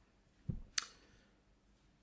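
A quiet pause with a soft low thump about half a second in, then a single short, sharp click.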